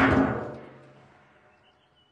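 Two grams of petrol igniting in a small test rocket: a bang, with a second jolt at the start, dies away over about a second and a half with a faint ringing in it.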